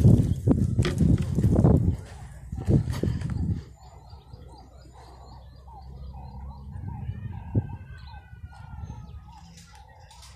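Low rumbling and a few knocks on the phone's microphone for the first three and a half seconds, then a quieter outdoor background with faint bird calls.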